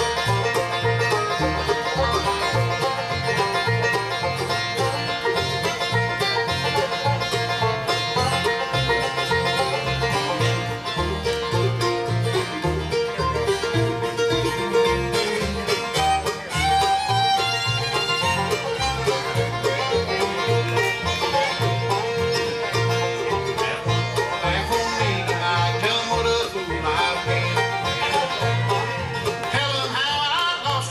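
Live bluegrass band playing an instrumental passage: banjo, fiddle, mandolin and acoustic guitar together, with an upright bass keeping a steady beat underneath.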